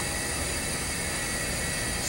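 Steady room tone in a seminar room: an even hiss with a low rumble, with no distinct events.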